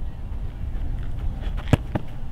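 An American football being kicked: a single sharp thud about three-quarters of the way through, over a steady low rumble.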